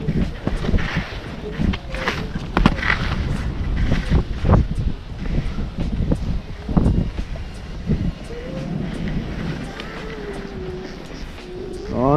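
Skis sliding and scraping over snow at speed, with irregular edge scrapes, over a steady rumble of wind buffeting the microphone.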